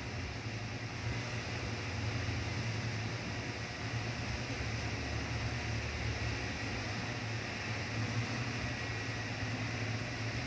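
Steady low hum and even hiss of room noise, with no distinct events.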